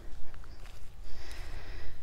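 Outdoor ambience dominated by a low, fluttering rumble of wind on the phone's microphone, with a faint thin high tone for about a second in the middle.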